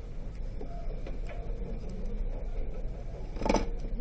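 Steady low hum of room tone, with one short knock about three and a half seconds in as a hand comes down on the paper worksheet.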